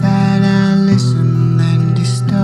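Instrumental passage of a pop song: sustained bass notes and a held wavering melodic line with guitar, and light crisp hits on the beat.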